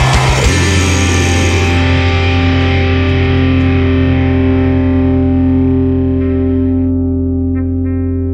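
Distorted rock music: the full band plays for about half a second, then drops to a single held distorted guitar and bass chord that rings on, its upper notes slowly fading.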